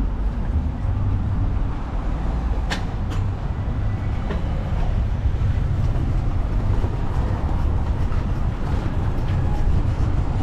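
Ride noise from the back of an open tuk-tuk rolling over cobblestone streets: a steady low rumble from the vehicle and its wheels on the cobbles. Two sharp clicks close together about three seconds in.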